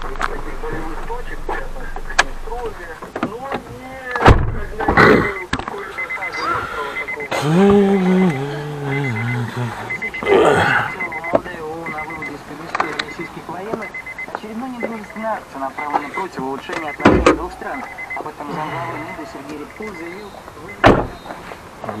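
Indistinct voices, with several sharp knocks and thumps as a car door is opened and shut, the last and clearest thump near the end.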